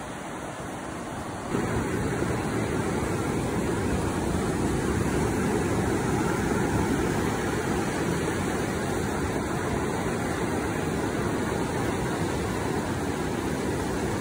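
Steady noise of ocean surf and wind on a phone microphone, with a low rumble that jumps up about a second and a half in and holds steady.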